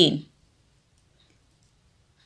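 Several faint, brief clicks of knitting needles touching as the yarn is wrapped three times around the needle and the stitch is knitted off.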